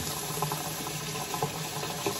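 Kitchen tap running steadily into a stainless steel sink, the stream splashing over a hand held under it.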